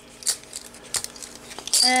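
A few light clicks and clinks of metal and plastic game coins being picked up and gathered off a rubber playmat.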